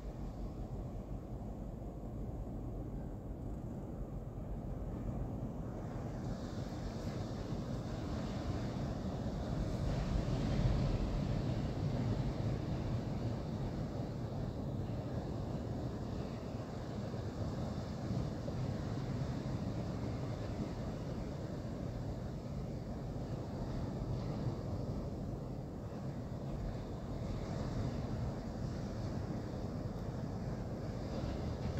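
Low, rumbling, wind-like noise drone with no clear pitch in an ambient instrumental passage. Hiss enters higher up about six seconds in, and the rumble swells about ten seconds in.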